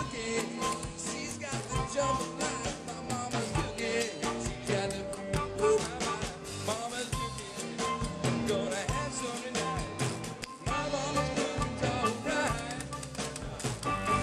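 Zydeco blues band playing live on an amplified stage: an instrumental stretch with electric guitars over bass and drums keeping a steady beat.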